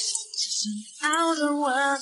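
Background music with a woman singing; her voice holds one long note in the second half.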